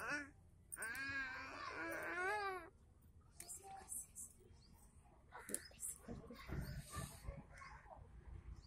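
A baby's drawn-out, wavering vocalizing of about two seconds starting just under a second in, followed by faint scattered small sounds and soft murmured voices.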